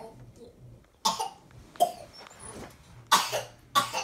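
A person coughing, four short harsh coughs: the first about a second in, another just under two seconds in, and two close together near the end.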